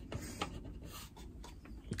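Faint handling noise: light rubbing and scraping with a small tap or two, about half a second in.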